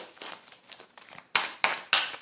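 A deck of Dreams of Gaia oracle cards shuffled by hand: cards rustling and slapping together, with three sharp snaps about a third of a second apart in the second half.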